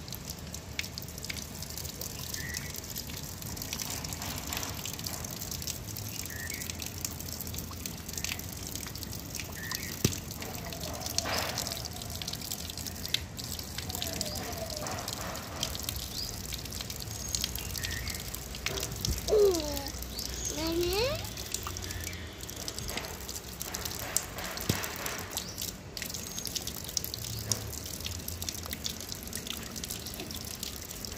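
Water from an outdoor wall tap running in a steady stream and splashing onto a wet stone floor, with many small splashes and drips as a toddler's hands and a mango go under it.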